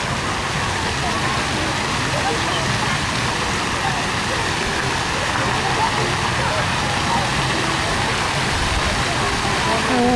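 Steady rushing and splashing of pool fountain jets spraying into the water, with no breaks.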